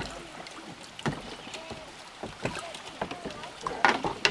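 Kayak paddle strokes and water splashing as a kayak glides in against a wooden dock, with a cluster of sharp knocks near the end as the paddle and hull meet the dock.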